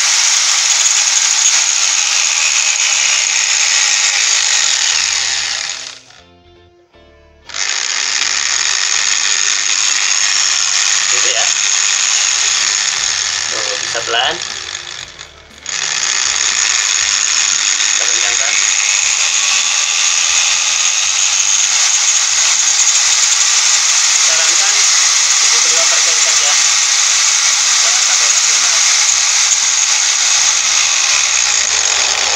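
Electric angle grinder running free, its motor speed set through a triac dimmer, so the pitch rises and falls as the dimmer knob is turned. It falls almost silent for about a second and a half near six seconds, then comes back abruptly. It dips again briefly around the middle.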